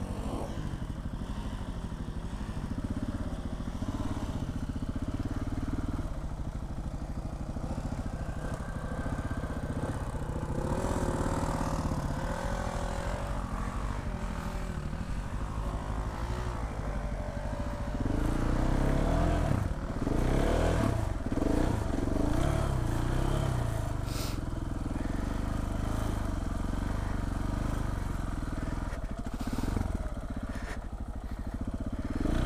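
Single-cylinder trail motorcycle engine running as the bike rides through mud ruts, revs rising and falling with the throttle, with louder bursts of revving about two-thirds of the way through.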